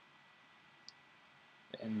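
Quiet room tone during a pause in a man's talk, with a single faint click about a second in; his voice comes back near the end.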